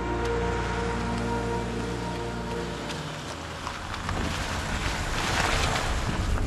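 A low held closing note of orchestral theme music fades over the first half, then a van's engine and tyre noise rise as it approaches and passes close by near the end.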